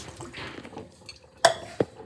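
Light handling clatter in a stainless steel sink: two sharp knocks, about a second and a half in and just after, the second with a short metallic ring, over faint rustling.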